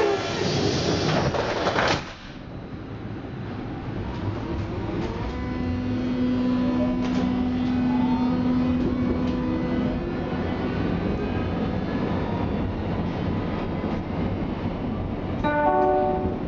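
Berlin U-Bahn F87 train setting off: doors shutting with a thump about two seconds in. Then, over running rumble, the drive gives a whine of several tones that climb in pitch as the train gathers speed. A short multi-tone chime sounds near the end.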